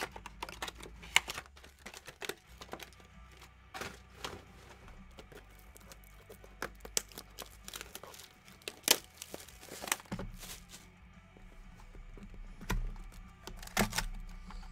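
Hands opening and handling a box of trading cards and its packaging: scattered sharp clicks and handling noise, with a few louder knocks about nine seconds in and near the end.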